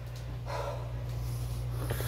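Steady low electrical hum from an electric guitar and amplifier left idle and unplayed, with a short breath about half a second in and a faint click near the end.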